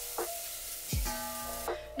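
Food sizzling in a frying pan on the stove, a steady hiss that cuts off abruptly near the end. It sits under soft background music with held notes and a deep, regular kick drum.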